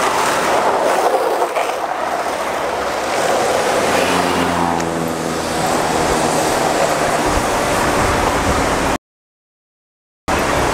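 City street traffic: the noise of cars driving through an intersection, with one vehicle's engine running close by for a few seconds in the middle. The sound cuts to dead silence about nine seconds in.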